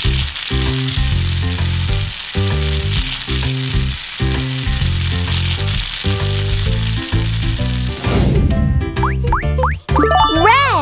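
Cartoon sound effect of air hissing steadily out of balloons driving little toy racers, over children's background music with a bass beat. The hiss cuts off about eight seconds in, followed by a few quick rising whistles near the end.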